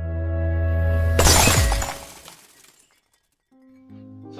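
Intro sound effect: a low hum swells to a glass shatter about a second in, the sound of the glowing light bulb bursting, and the shatter trails off. After a brief silence, music starts near the end.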